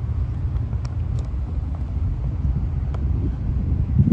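Steady low rumble with a few faint clicks.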